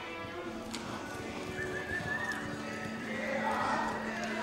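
A reining horse's hoofbeats on the soft dirt of an arena as it speeds up from a walk into a lope, with music fading out underneath. Loud high wavering calls rise over it near the end.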